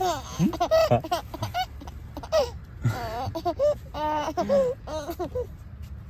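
A baby laughing and squealing in a run of short, high-pitched bursts, tapering off in the last second or so.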